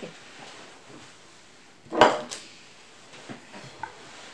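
A glass jar being picked up from the table: one sharp clink about halfway through, a lighter click just after, and a few faint knocks near the end.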